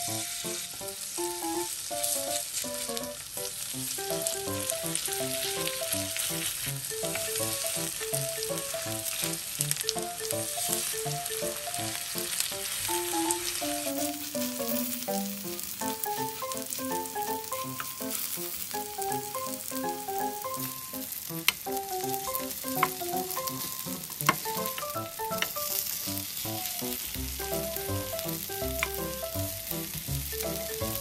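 Battered spring cabbage pancakes frying in hot oil in a nonstick egg pan, a steady dense sizzle, with a few sharp clicks in the second half.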